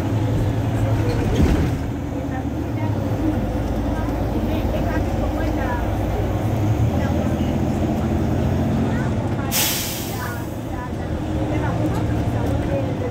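Mercedes-Benz Citaro C2 city bus idling at a stop with a steady diesel engine note. About nine and a half seconds in comes a short, sharp hiss of compressed air from its pneumatic system.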